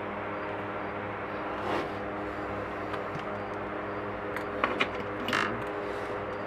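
A steady hum in the workshop, with a few faint light clicks near the end.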